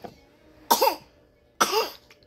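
An 11-month-old baby with asthma coughing twice, two short high-pitched coughs about a second apart.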